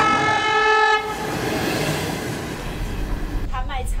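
A train horn holds one steady note and cuts off about a second in, followed by steady background noise.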